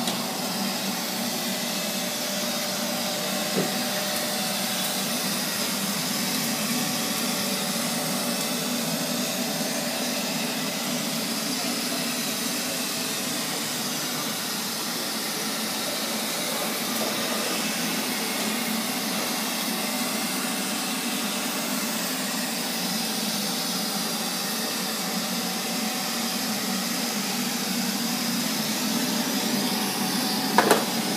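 Neato XV-25 robot vacuum cleaner running at a steady level: the constant high noise of its suction motor and brush, with a few steady tones over the hiss.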